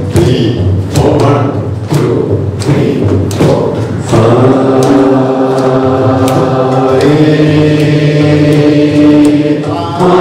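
A group of voices singing a chanted prayer song. For the first four seconds a thudding beat falls about twice a second under the singing; after that the voices hold long, drawn-out notes.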